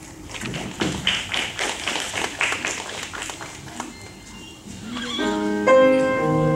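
Irregular knocks and taps of footsteps across a stage as a person walks off. About five seconds in, a grand piano begins its introduction with sustained chords.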